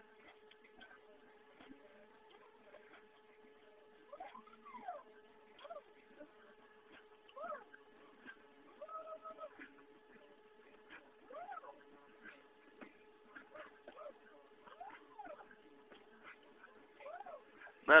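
Stepper motor driving a CNC X-axis lead screw through an STK672-050 driver, making a series of slow moves: each a whine that rises and falls in pitch, a few seconds apart, one holding a steady pitch for a moment. A steady tone runs underneath throughout.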